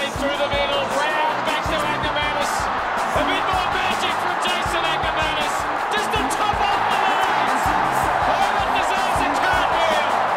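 Backing music with a steady beat, laid over a stadium crowd cheering a goal.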